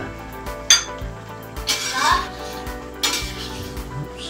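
A long metal utensil clinking and scraping against a stainless steel wok as the dish is stirred, with one sharp ringing clink about a second in and scraping strokes around the middle and near the end.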